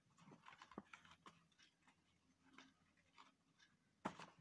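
Near silence, with faint taps and rustles of paper cubes being handled on a wooden table, mostly in the first second or so.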